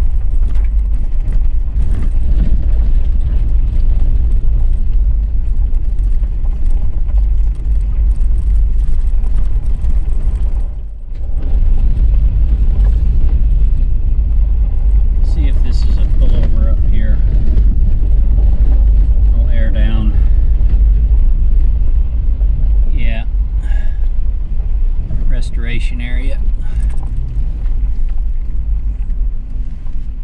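Heavy, steady low rumble of a fifth-generation Toyota 4Runner on BFGoodrich KO2 all-terrain tyres driving over a washboard gravel road, heard from inside the cabin. The rumble drops briefly about eleven seconds in.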